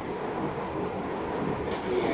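Steady background noise: an even hiss and hum with no distinct events.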